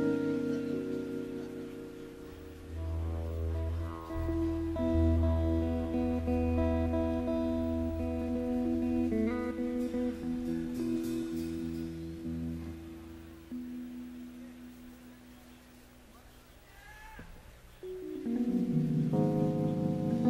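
Live jazz-fusion band opening a slow tune without a beat: electric guitar holding long ringing chords over deep sustained bass notes. The sound thins out and fades about three-quarters of the way through, and a new phrase of chords swells in near the end.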